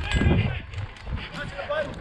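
Muffled low thuds and rumble from movement and handling picked up by a body-worn camera, heaviest at the start, with faint voices in the background.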